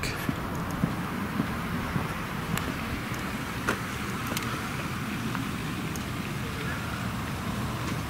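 Steady rumble of road traffic from a nearby street, with a few faint clicks about two and a half to four and a half seconds in.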